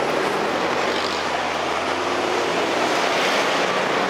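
A heavy road vehicle's engine running, a steady low drone with street traffic noise around it.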